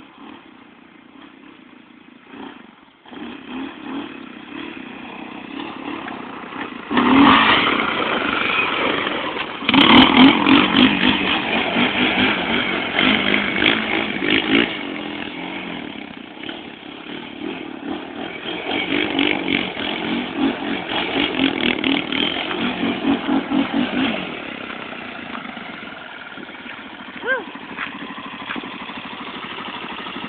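Sport ATV engine revving hard in surges as the quad is ridden on dirt, quiet at first, then suddenly loud about seven seconds in. The revs rise and fall repeatedly, then drop to a lower, steadier running sound near the end.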